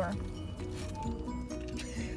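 Music playing quietly on the car radio, with steady held notes.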